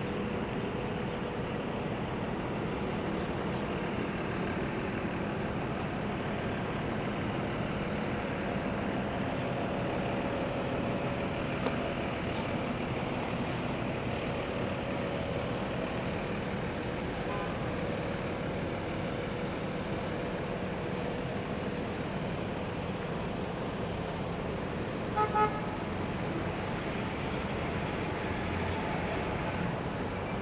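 Steady city street traffic, the even noise of cars and engines passing on a multi-lane avenue. Near the end a vehicle horn gives two quick toots.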